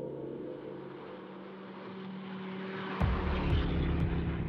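Held music tones fade under a slowly rising rush of noise; about three seconds in, the low engine rumble of a bus driving past cuts in suddenly and is the loudest sound.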